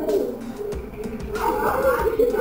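Indistinct, overlapping children's voices in a classroom, with a student answering too softly for words to be made out.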